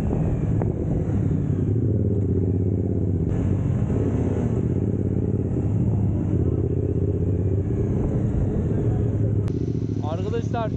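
Motorcycle engine running steadily while under way, with a low, even drone and no change in revs.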